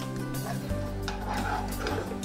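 Soft background music of steady held tones and a low bass line, with faint sounds of a utensil stirring food in a nonstick skillet.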